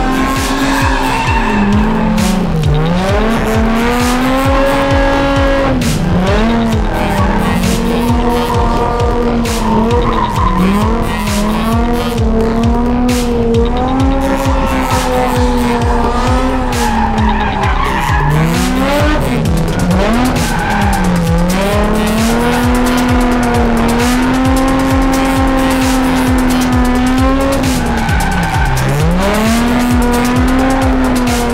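Nissan 350Z's 3.5-litre V6 engine held at high revs while drifting, the pitch dropping sharply and climbing back every few seconds, with tyres squealing as they slide.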